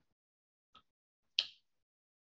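Two short, sharp clicks in a quiet room, a faint one about three-quarters of a second in and a louder one about half a second later.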